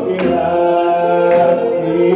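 Loud music: singing over held instrumental notes, with a sharp beat about once a second.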